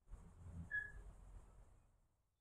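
Faint outdoor ambience with a steady high hiss, and a single short, high bird chirp a little under a second in.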